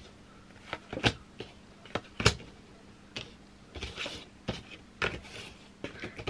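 Tarot cards being drawn from the deck, turned over and laid down on a bamboo table mat: a string of light, irregular taps and flicks, the sharpest a little over two seconds in.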